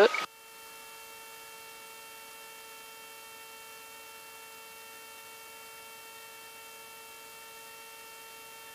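Faint steady hum made of several even tones over a light hiss, heard through the intercom of a Guimbal Cabri G2 helicopter gliding down in autorotation.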